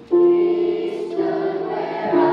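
Children's choir singing a hymn anthem with piano accompaniment. The piano sounds a new chord just after a brief pause, and the voices come in over it about half a second later.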